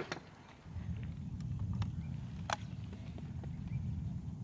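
Break-action shotgun being handled after a shot, with a few light clicks of the action (one at the start and a sharper one about two and a half seconds in), over a low, steady rumble.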